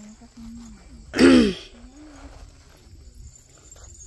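A single short, loud vocal outburst from a person, falling in pitch, about a second in, between stretches of faint talk.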